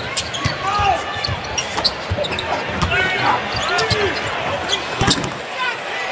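Basketball bouncing on a hardwood court and sneakers squeaking during live play, over steady arena crowd noise.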